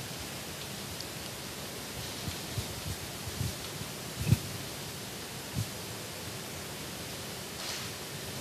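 Steady hiss from the sound system of a handheld microphone, with a few soft handling bumps as the hands shift on the microphone, the loudest about four seconds in.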